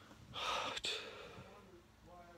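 A man's heavy, audible breath close to the microphone: a noisy rush of air starting about a third of a second in and lasting about half a second, with a small click in the middle, then trailing off.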